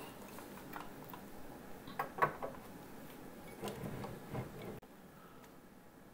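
Faint clicks and light knocks of a Lionel 6466W O gauge tender being handled and turned over, its metal trucks and wheels shifting. A few scattered taps, then near silence for the last second.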